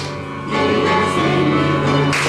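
Congregation singing a hymn together, a new phrase starting about half a second in.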